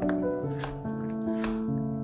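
Chef's knife slicing a carrot on a bamboo cutting board, a few sharp cuts against the board, over background music with held notes.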